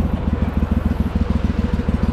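Gator-Tail 40 XD Pro surface-drive mud motor pushing a skiff along at steady throttle, a continuous low, fast-pulsing throb.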